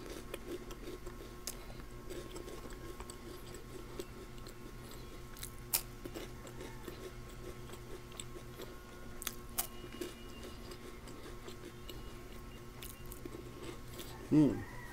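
Quiet chewing of a crunchy rolled wafer stick with chocolate filling, with a few sharp crunches, over a faint steady hum.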